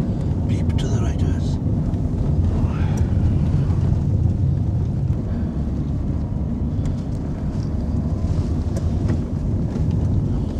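Car cabin noise: the steady low rumble of the engine and tyres as the car drives along a narrow lane, with a brief hiss about a second in.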